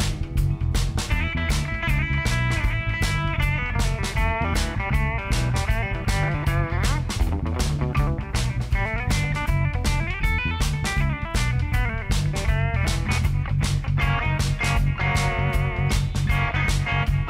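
A band playing live: a hollow-body electric guitar plays lead lines over a hollow-body electric bass and a steady drum beat. One guitar note slides upward about seven seconds in.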